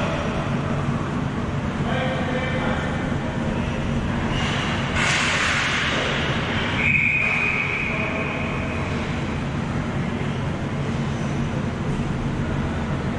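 Ball hockey game in a large echoing arena: a steady low hum with distant players' voices, a short rush of noise about five seconds in, and a single referee's whistle blast about a second long around seven seconds in.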